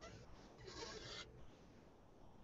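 Near silence on a phone conference-call line: a low hum, with a faint short hiss about half a second to a second in.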